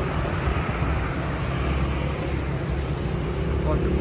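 Steady low vehicle rumble with outdoor street noise.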